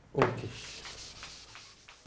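Chalkboard eraser rubbing across a blackboard: a steady scrubbing hiss lasting about a second and a half.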